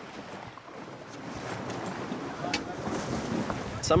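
Sea water splashing and sloshing at the side of a boat as a great white shark breaks the surface at a bait line, with wind on the microphone. The splashing grows louder over the first couple of seconds.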